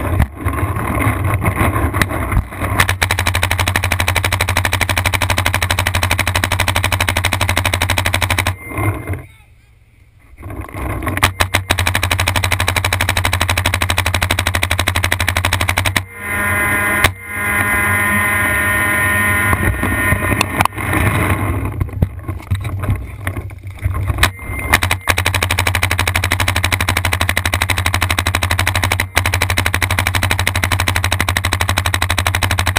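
Paintball markers firing in fast, continuous strings of shots, with a short lull about nine seconds in before the firing picks up again.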